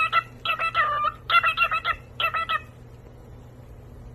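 Cockatiel chirping in short repeated warbling phrases, four bursts about a second apart, then stopping about two-thirds of the way through.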